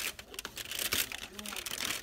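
A Nestlé Milkybar chocolate advent calendar's cardboard doors and foil crinkling as they are picked open by hand: a dense run of small, quick crackles.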